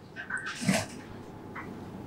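Marker pen writing on a whiteboard: a short squeak and a few scratchy strokes in the first second, then quieter.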